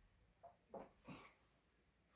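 Near silence: room tone, with three faint, short soft sounds between about half a second and a second in.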